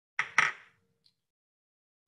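A small hard object set down on a lab benchtop: two quick clinks about a fifth of a second apart, followed by a short, faint ring.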